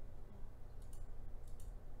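Quiet room tone with a steady low hum and a few faint, short clicks in the second half.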